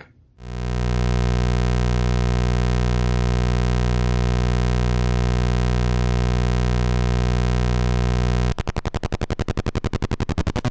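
Rakit Mini-APC (Atari Punk Console) synth kit putting out a steady, low, buzzy drone. A little after eight seconds in, it switches to a rapid, stuttering pulse.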